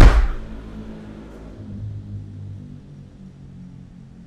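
A Toyota Yaris hatchback's tailgate slammed shut: one heavy thud at the very start, fading quickly. After it, only soft background music.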